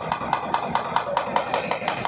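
Demolition machinery working on a house: a rapid, steady metallic knocking, about five knocks a second, over a lower rumble.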